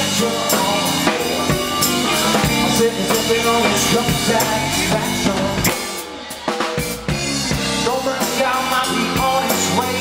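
Live rock band playing an instrumental passage between sung lines: drum kit, electric bass and electric guitar. About six seconds in the band briefly drops back, the low end falling away, then comes in again at full level.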